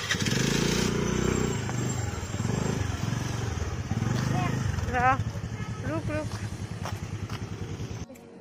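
Motor scooter engine starting, then running and pulling away, its pitch rising and falling with the throttle.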